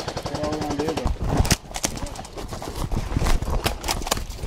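Airsoft electric gun firing rapid full-auto bursts, a quick run of sharp clacking shots that keeps going on and off.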